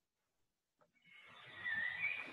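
Farm ambience from a recording starting about a second in: a horse neighing, with birds chirping.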